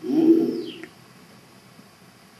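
A man's short, low, wordless vocal sound, like a hum, lasting under a second.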